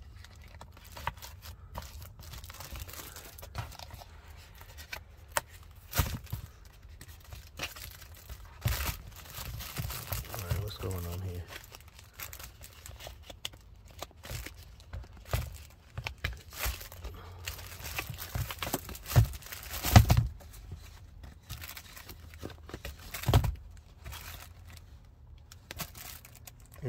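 Hands handling a pleated cabin air filter, its plastic frame and plastic wrapping: irregular crinkling and crackling, with scattered clicks and a few sharp knocks, the loudest about twenty seconds in.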